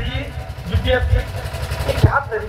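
A man's voice through a microphone and loudspeaker, broken and between phrases, over a steady low rumble.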